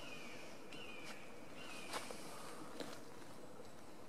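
A bird calling repeatedly in the woods: a few short, high, slightly falling calls in the first half, faint, with a few light ticks or twig snaps.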